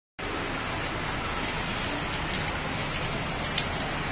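Steady hiss of rain falling, with a low hum underneath and a few faint ticks of drops.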